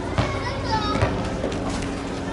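Children's voices calling and chattering, with high, gliding shouts in the first second. Two sharp knocks cut through, one just after the start and one about a second in.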